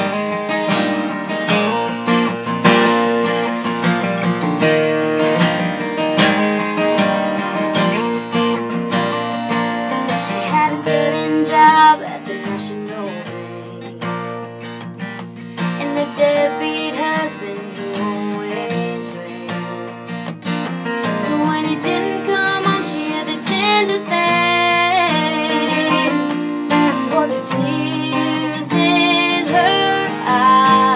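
Live acoustic guitar strumming a country song, loudest in the first twelve seconds and softer after. From about halfway in, a woman sings over the guitar.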